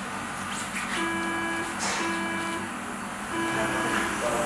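Operating-theatre monitor sounding a repeated electronic tone: three steady beeps of the same pitch, each about half a second long, over a steady equipment hum, with a short click between the first two beeps.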